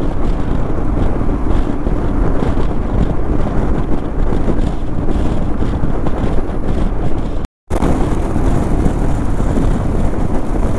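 Wind rushing over the camera microphone, with a single-cylinder Royal Enfield Himalayan motorcycle and its tyres running at highway speed. The sound cuts out completely for a split second about seven and a half seconds in, then carries on the same.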